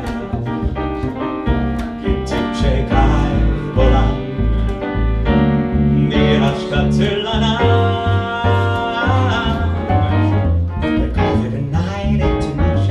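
Live jazz from a trio: piano and upright double bass playing, with a man singing into a microphone.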